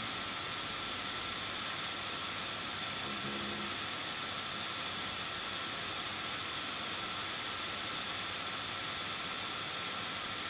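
Steady hiss with a faint, thin high-pitched electrical whine: the background noise of a webcam microphone, with no other sound in it.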